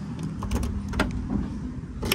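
Nissan Versa trunk lid being released and opened: two sharp clicks from the latch about half a second and a second in, over a low rumble.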